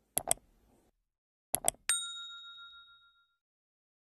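Sound effect of two quick double clicks, like a mouse button, followed by a single bright bell ding about two seconds in that rings out for roughly a second and a half. This is the usual click-subscribe-and-ring-the-bell outro effect.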